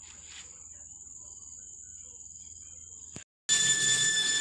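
Steady high-pitched trill of insects over faint outdoor background. It stops abruptly a little over three seconds in and gives way to a louder steady hum with thin high whining tones.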